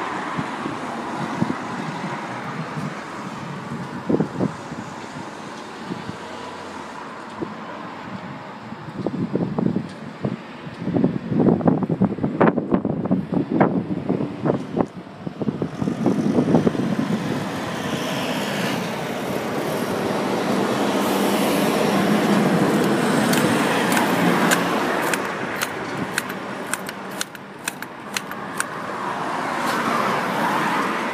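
Road traffic going by on a street, one vehicle building up and fading away over several seconds in the second half. Irregular knocks come in the middle and a run of sharp clicks near the end.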